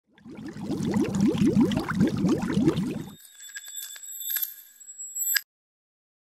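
Sound effect for an animated logo intro: about three seconds of quick rising swooshes, several a second, then a bright bell-like ringing with a few clicks, which cuts off suddenly.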